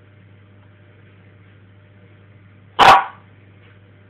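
A Staffordshire bull terrier gives a single short, loud bark nearly three seconds in.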